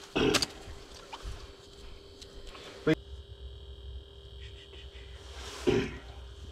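A man clears his throat, then a single sharp click sounds about three seconds in over a faint steady hum, and a short vocal sound comes near the end.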